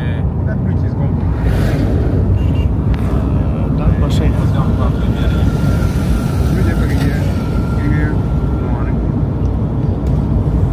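Wind rushing over the microphone, with engine and road rumble from a moving motorcycle. A thin steady high tone comes in about halfway through and stops near the end.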